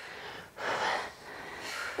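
A woman breathing hard during a strength exercise, close to the microphone: one breath about half a second in, lasting about half a second, and a softer one near the end.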